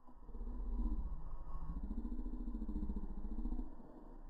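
An engine running close by, its pitch rising about a second and a half in, holding, then dropping near the end, over a steady low rumble.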